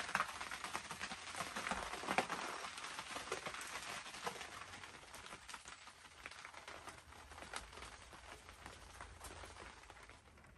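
Rain pattering on the fabric of a rooftop tent, heard from inside as a dense, irregular crackle of drops that gradually fades.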